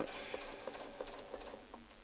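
Domestic sewing machine stitching slowly during free-motion ruler work, a faint run of light needle ticks that fades slightly toward the end as the machine slows.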